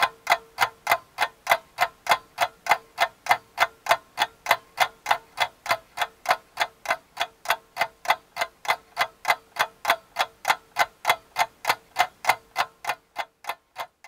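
A clock ticking evenly, a little over three ticks a second, over a faint steady tone; the ticking fades out near the end.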